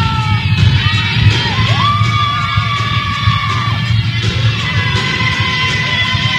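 Live pop concert music: the band playing with long held melody notes, and the crowd cheering and yelling along.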